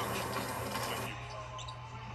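Live basketball court sound from a game broadcast: a steady hum of arena noise that thins about a second in, then a few short squeaks and taps from play on the hardwood.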